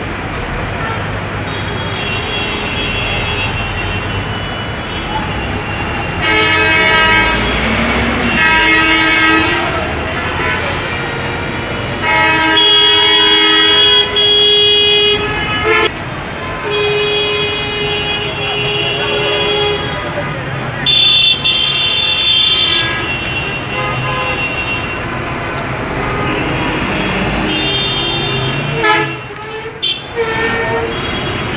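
Busy road traffic at a crowded intersection, with vehicle horns, chiefly from buses, sounding again and again in long blasts of one to four seconds, sometimes overlapping. Engine noise and voices run underneath.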